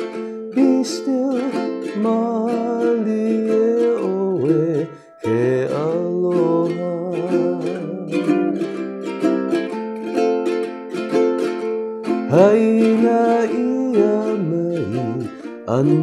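Ukulele strummed steadily in chords, with a short break about five seconds in before the strumming resumes.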